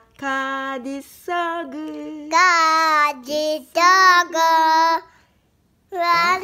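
A toddler girl singing a wordless little tune of repeated syllables ("i deo-deo"), a string of held notes that steps higher about two seconds in; the singing stops about five seconds in.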